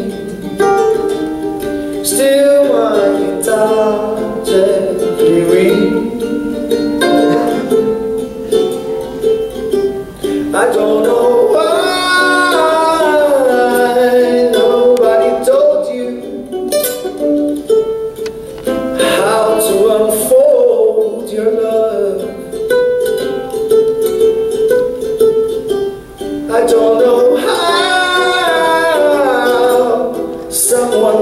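Live solo music: a man singing long, held phrases over a plucked small-bodied acoustic string instrument.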